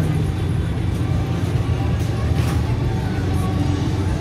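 Steady low drone of fairground ride machinery, with music playing and voices in the background.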